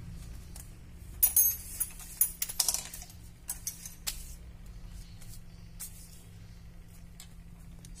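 Scattered light clicks and rattles, most of them about one to three seconds in, over a steady low hum.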